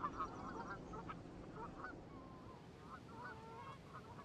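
Canada geese giving a series of faint, short honking calls, with a brief lull about two seconds in.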